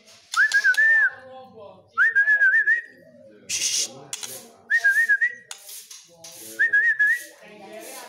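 Whistling: the same short wavering phrase repeated four times, about every two seconds, over fainter voice-like sound in the background.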